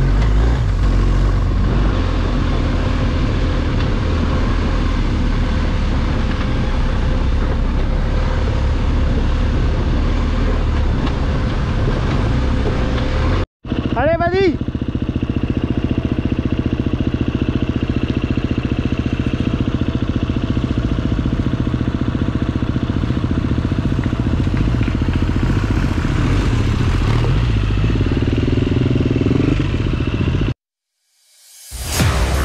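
BMW R1250 GS Adventure's boxer-twin engine running under way, heard close from on board with a strong low rumble. About halfway the sound cuts out for a moment, then trail motorcycles are running again, with a brief high sliding tone just after the cut.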